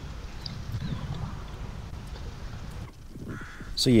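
Woodland ambience from the trail camera's own microphone: a low background rumble with a few faint bird calls. It dips briefly near three seconds in.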